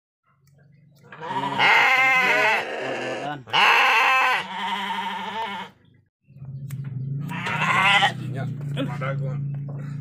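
Sheep bleating loudly: two long bleats with a wavering pitch in the first six seconds, then a shorter one about three-quarters of the way through.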